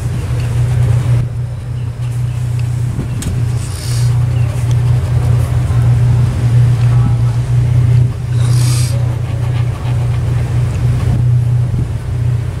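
A steady low mechanical hum, like a running engine or machine, with two brief hissing bursts, one about three and a half seconds in and one about eight and a half seconds in.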